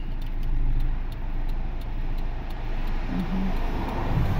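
Idling car engine with the hazard-light flasher ticking evenly over it for the first few seconds.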